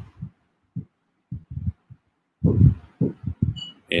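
A man's voice in short, low, muffled fragments, sparse at first and denser from about halfway, with a brief high tone near the end.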